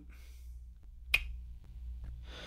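A single short, sharp click about a second in, over a low steady hum in a pause between speech.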